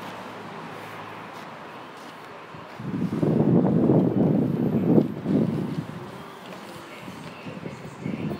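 Buffeting rumble on the phone's microphone: a loud, irregular rumble starting about three seconds in and lasting about two and a half seconds, over a steady low hum.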